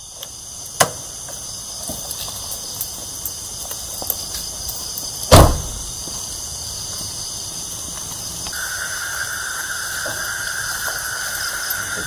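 Steady shrill chirring of night insects, with a second steady tone joining about two-thirds of the way through. A small click comes just under a second in, and about five seconds in a minivan's side door is shut with one loud thump.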